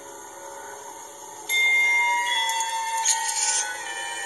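Animated-film score music: soft sustained tones, then about a second and a half in a sudden louder entry of bright chime-like bell tones with a sparkling shimmer on top.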